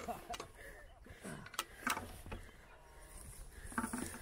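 A few short clicks and rattles from a bicycle being handled and lifted in long grass, amid faint rustling and distant voices.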